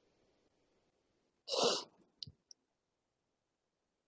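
A single short breath, a sigh or exhale, about a second and a half in, followed by a few faint clicks; otherwise near silence.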